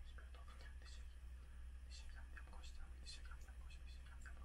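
A man faintly whispering a prayer in short breathy syllables, over a steady low hum.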